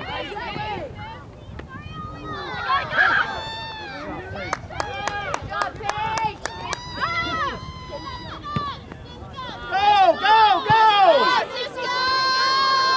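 Several voices shouting and calling out across a soccer field, overlapping and high-pitched, loudest near the end. A quick run of sharp clicks about halfway through.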